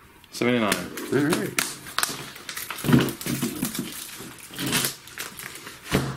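Plastic comic-book bags crackling, with light taps as bagged comics are handled and laid on a table.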